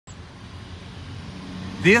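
Steady outdoor background noise, an even hiss with a low rumble that grows slightly louder; a man starts speaking near the end.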